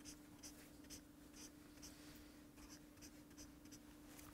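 Highlighter marker drawn across the paper of a spiral-bound book in a series of short, faint strokes, over a low steady hum.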